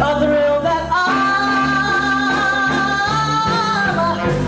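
A woman singing blues with a live band, holding one long note from about a second in until near the end over a steady bass line.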